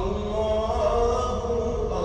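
Background nasheed: a voice chanting a drawn-out melody.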